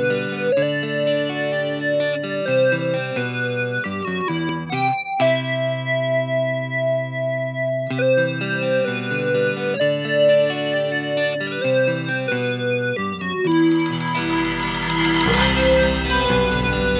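Instrumental intro of a band song: a keyboard plays held chords, then a little past three-quarters of the way in the drums with cymbals and the bass come in and the full band plays.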